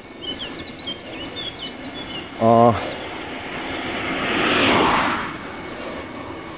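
Small birds chirping during an e-bike ride, with a brief hum of a man's voice about halfway through. Then a rushing noise swells up, peaks and fades over about two seconds.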